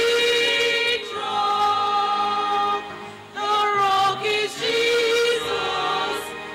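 Church choir of men and women singing together, holding long notes, with a short break for breath about three seconds in.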